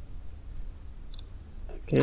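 A single short click of a computer mouse about a second in, over a low steady hum; a man's voice starts speaking just before the end.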